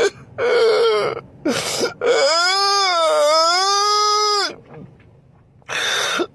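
A man crying theatrically: short sobbing sounds, then one long high wail of about two and a half seconds that dips and rises in pitch, then a sharp noisy breath near the end.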